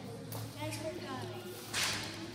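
A flat piece of cardboard tossed to the floor, landing with one brief, sharp slap near the end, over faint voices.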